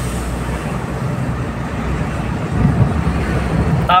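Steady road and engine noise inside a moving vehicle's cabin: a low rumble with tyre hiss over it.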